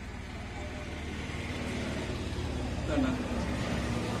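A motor vehicle running on a nearby road, its low rumble growing steadily louder as it approaches.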